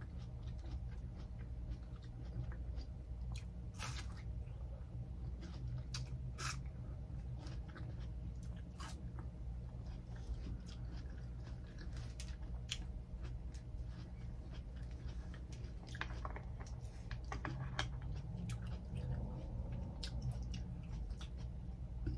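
Close-miked chewing and biting of juicy watermelon: wet, irregular crunches and mouth clicks over a steady low hum.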